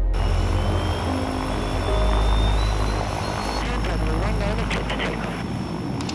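Twin turboprop engines of a Beechcraft King Air running with a deep steady drone, and a thin high whine that rises slowly over the first three seconds or so.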